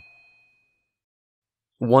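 A thin, high ringing tone fades out over about half a second, then silence, until a narrator's voice begins near the end.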